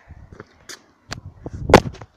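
Handling knocks on a handheld camera's own microphone as it is thrown down from a high wall, a few light clicks followed by a heavy thud near the end as it is stopped below.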